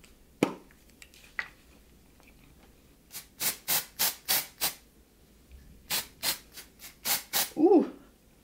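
An aerosol can of Bed Head Oh Bee Hive! matte dry shampoo sprayed into hair in short hissing puffs. A run of about six quick puffs comes a few seconds in, and another run of about six follows near the end.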